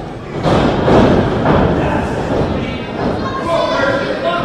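Heavy thuds of wrestlers' bodies hitting the wrestling ring's canvas, with voices shouting near the end.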